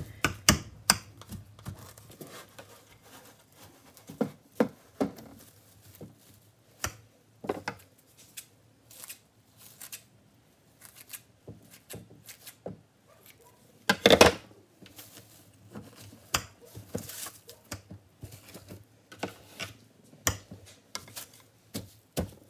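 Clear plastic food film being unrolled, crinkled and pressed down by hand, and cut with scissors. It makes a string of sharp crackles and snips, the loudest about 14 seconds in.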